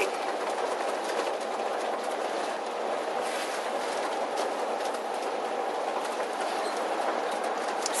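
Steady road noise of a moving RV, heard from inside the cab while it drives along at road speed.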